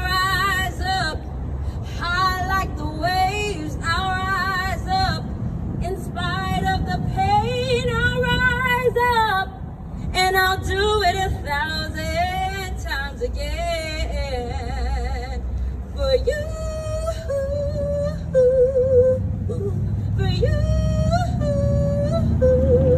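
A woman singing a soul ballad solo, holding notes with heavy vibrato and running quickly between pitches, over a low musical accompaniment.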